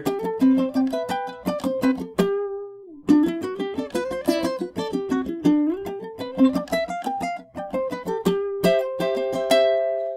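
Ukulele played in short strummed chord phrases, chord inversions moved up the fretboard, with a brief break about two seconds in and a chord left ringing near the end.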